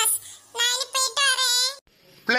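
A high-pitched cartoon character's voice in two drawn-out phrases, cutting off abruptly near the end.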